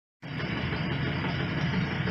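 Steady background noise with a low hum, starting a moment in.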